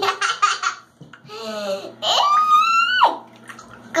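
Laughing at first, then a high-pitched squeal lasting about a second that rises slightly in pitch and drops off sharply.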